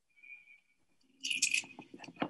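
Bright clinking and jingling of small hard pieces, starting about a second in after a faint high tone, from a film soundtrack heard through a video call.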